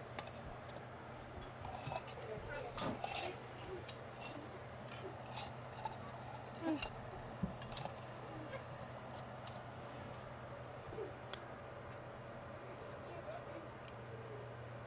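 Metal canning lids and screw bands being set and twisted onto small glass mason jars: scattered light clicks, clinks and scrapes of metal on glass, mostly in the first half, over a steady low hum.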